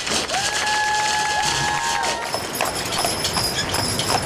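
Hooves of a pair of draft horses pulling a wagon, clip-clopping on a paved street in the second half. Before that come a couple of long held musical notes with sharp taps.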